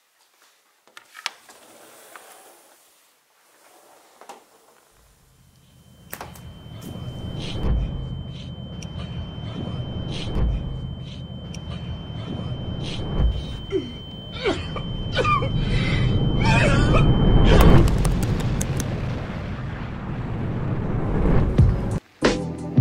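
An aluminium sliding door is pulled open, with a knock about a second in. From about five seconds a steady low rumble sets in and builds, with a thin steady high whine and irregular clicks over it until near the end.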